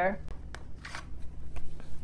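Faint rustle of a message card being drawn from the deck and handled, card brushing on card about a second in and again near the end.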